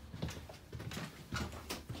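Footsteps on a caravan floor: a run of light, uneven knocks, about six or seven in two seconds.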